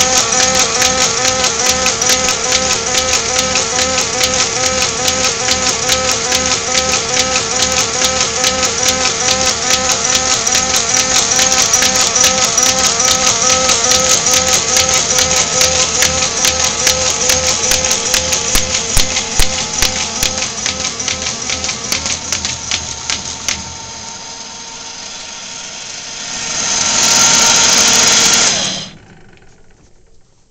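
Baum 714 XLT air-feed paper folder and its 8-page right-angle folder running: a steady motor whine under rapid clicking and rattling as sheets of paper feed through the fold rollers. The clicking dies away about three quarters of the way through. Near the end a loud hissing rush swells and then cuts off suddenly as the machine stops.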